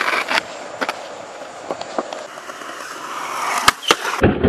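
Skateboard wheels rolling on rough concrete, with sharp clacks of the board popping and landing: a cluster at the start, a few single ones, and two loud ones near the end. The rolling swells in the seconds before those last clacks.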